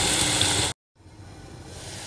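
Chopped onions and green chillies sizzling in hot oil in a pan as they fry toward brown. The sizzle cuts off abruptly under a second in. After a brief silence a fainter sizzle returns and slowly grows louder.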